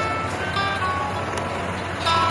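Light plucked-string background music over a steady noisy hum.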